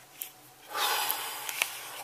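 A click, then a loud breathy exhale lasting under a second, with a few small clicks from a camera handled in a gloved hand.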